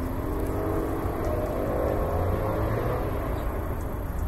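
Engine of a passing motor vehicle: a steady drone that comes in at the start and fades out about three seconds later, over a constant low rumble.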